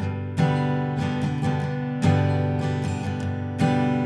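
Acoustic guitar strumming a G chord voicing, several strums with the chord ringing between them.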